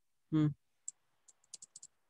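Faint keystrokes on a computer keyboard as a terminal command is deleted and retyped: a single key about a second in, then a quick run of about six keys near the end.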